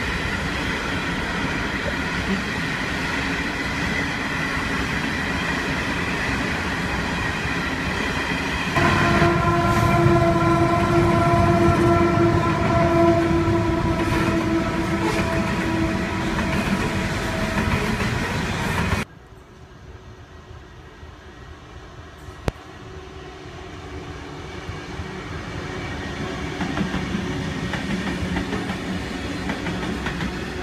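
Coal train hopper wagons rolling past on jointed track with a steady clatter. About a third of the way in, a long steady high-pitched tone sounds over the wagons for several seconds. Just past halfway the sound drops suddenly to a quieter run of rolling wagons that grows louder toward the end.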